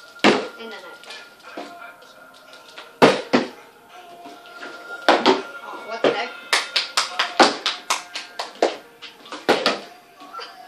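Partly filled plastic water bottle being flipped and knocking down onto a wooden tabletop: a series of sharp knocks, with a quick run of them in the second half. Faint music plays underneath.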